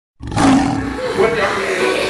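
A loud lion roar sound effect, starting suddenly about a fifth of a second in, used as the sting for a record label's logo.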